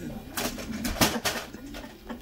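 Self-balancing hoverboard spinning in place on carpet, its electric hub motors whirring with a low wavering pitch. Short sharp hissing noises come about half a second in and again around one second.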